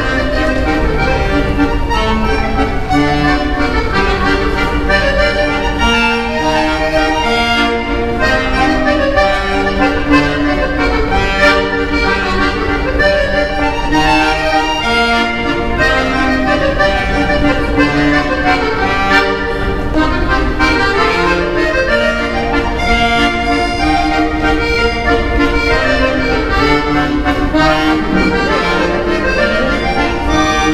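Solo piano accordion (a red Pistelli) played without pause: a busy line of changing notes over lower accompanying notes, at a steady level.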